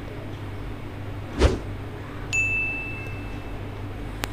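A single bright electronic ding that starts suddenly a little after two seconds in and rings for about a second as it fades: a pop-up subscribe-button sound effect. A short soft knock comes about a second and a half in, over a low steady hum.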